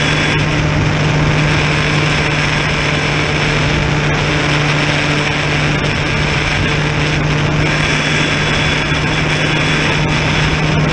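RC plane's motor and propeller running steadily in flight, a constant low hum under a rush of wind noise on the onboard microphone.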